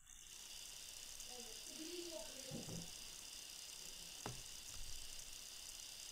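Faint steady hiss from an open microphone on a video call, with a faint distant voice and two light clicks.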